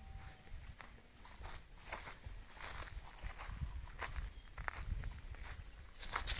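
Faint footsteps on dry ground, about two steps a second and unevenly spaced, over a low, uneven rumble.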